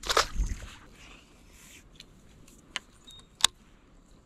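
A small largemouth bass dropped back into the lake with a brief splash, followed by light handling of fishing gear on the boat deck with two sharp clicks near the end.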